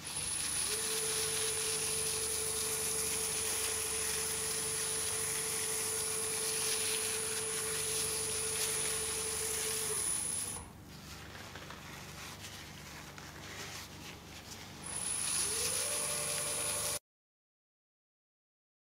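Wood lathe running steadily with a held whine as the bowl spins under a finishing rag. About ten seconds in the sound drops quieter and the whine stops, then near the end a whine slides up in pitch as the sound grows louder again, and it cuts off suddenly.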